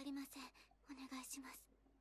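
A woman's quiet voice speaking Japanese in short phrases with pauses between them: anime dialogue.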